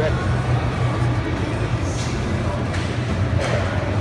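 Busy exhibition-hall ambience: distant voices and background music over a steady low hum.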